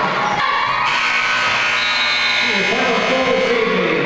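Arena scoreboard horn sounding one steady buzz for about three seconds over crowd voices, marking the end of the game.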